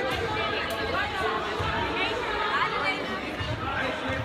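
Overlapping chatter of spectators and players in a gymnasium, several voices talking and calling out at once, with no clear words.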